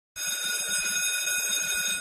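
School bell ringing steadily. It starts a moment in.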